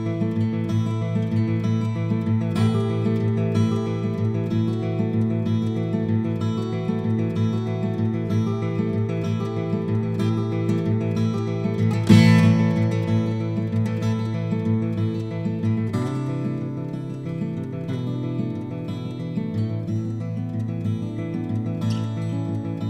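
Solo steel-string acoustic guitar with a capo, playing a continuous instrumental passage of ringing notes. There is one louder accented chord about twelve seconds in and a change to a different chord a few seconds later.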